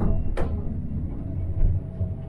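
A stainless-steel litter-bin flap in a train toilet gives one sharp metallic click about half a second in. Under it runs the steady low rumble of the moving train.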